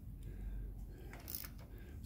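Faint handling sounds of a ring spanner turning the crankshaft nut of a Suzuki GT750 engine, with one light click about a second and a half in, over a low steady hum.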